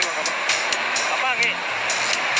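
Several people's voices calling out over a dense, steady background noise, with scattered sharp clicks.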